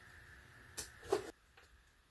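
Faint room tone with two brief, quiet clicks from a piece of polyethylene milk-jug plastic being handled; the sound cuts out to silence near the end.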